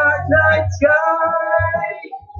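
A man singing loudly, a rock vocal line that settles into one long held note in the second half.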